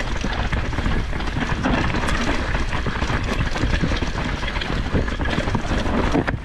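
Mountain bike riding fast downhill over a rooty dirt trail: a steady rush of tyre noise with many quick rattles and knocks from the bike going over roots.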